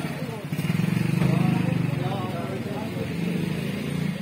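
A car engine running at low speed as a car edges through a tight lane. It swells about half a second in and eases off after about two seconds. Several people are talking over it.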